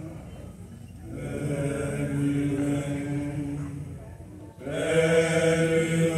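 Men's choir singing a hymn in long, held chords: a quiet start, a first sustained phrase from about a second in, a short break, then a louder second phrase from near the fifth second.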